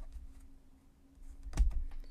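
Tarot cards handled on a tabletop: a few soft clicks, then one louder sharp knock about one and a half seconds in.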